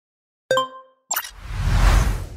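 Logo-animation sound effects: a short pitched pop about half a second in, then a click and a whoosh with a deep rumble swelling toward the end.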